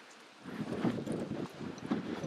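Footsteps on stony ground: a run of short, irregular knocks of boots on rock, starting about half a second in.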